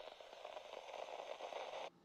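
Faint, steady static hiss, a TV-static sound effect laid under a 'please stand by' test-card graphic, cutting off suddenly near the end.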